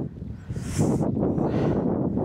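Wind buffeting the microphone: an uneven low rush, with a short hiss a little under a second in.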